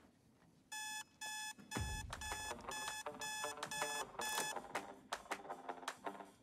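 Digital alarm clock beeping: a run of short, high beeps, about two a second, starting just under a second in and stopping after about four and a half seconds. A low thump comes about two seconds in, and a run of short clicks follows near the end.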